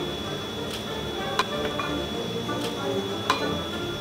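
Soft background music with a few short, sharp clicks of a small paring knife cutting button mushrooms held in the hand, the two loudest about a second and a half in and near the end.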